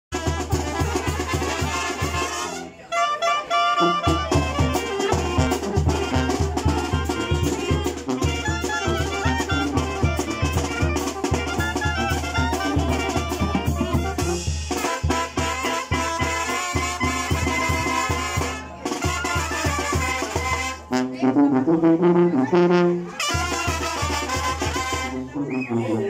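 Mexican banda brass band playing a son: trombones and clarinets carry the tune over a steadily pulsing tuba bass line and drums. The band breaks off briefly about three seconds in, and the bass drops out for a couple of seconds near the end while the horns hold.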